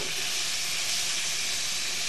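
Prawns in a Cajun sauce sizzling steadily in a frying pan over a gas burner as the sauce reduces.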